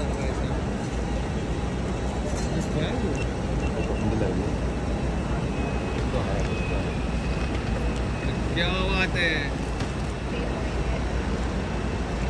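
Steady traffic rumble with people talking, and a loud called-out voice about nine seconds in.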